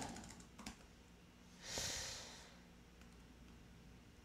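Faint computer keyboard: a few key clicks in the first second as code is deleted. About two seconds in, a soft breath-like hiss swells and fades.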